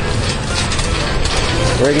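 Metal hand truck being wheeled over asphalt, its wheels and frame rattling in a dense run of rapid clicks.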